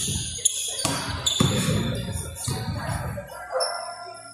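A basketball hitting the rim and bouncing on a hardwood gym floor, a few sharp thuds in the first second and a half, echoing in a large hall.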